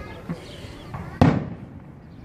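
A single sudden, short burst of noise about a second in, dying away within a fraction of a second.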